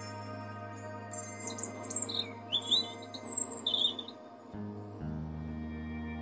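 European robin singing: a run of short, high, quickly changing warbling phrases for the first few seconds, over background music with sustained chords that change about five seconds in.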